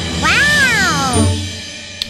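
A cat's meow, one call about a second long that rises and then falls in pitch, over a children's song's backing music.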